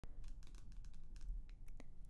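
Fingernails tapping lightly on a glossy magazine cover: a quick, irregular run of about a dozen soft clicks.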